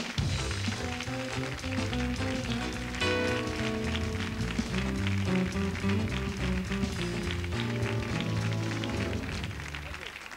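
Walk-on music from the show's band, with a stepping bass line and a steady beat; it starts suddenly and fills out about three seconds in.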